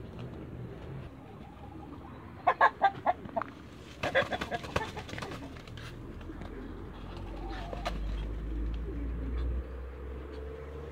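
Muscovy drakes fighting, with two short bursts of flapping and scuffling about two and a half and four seconds in. A low rumble builds near the end.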